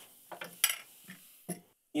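Coloured salt poured from a folded sheet of paper into a glass mason jar: a faint trickle with a few light ticks and clinks against the glass, the sharpest about half a second in.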